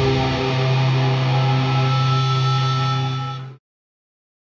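A punk rock band's electric guitar and bass holding one ringing chord at the end of a song, steady with a strong low bass note, then cut off abruptly about three and a half seconds in.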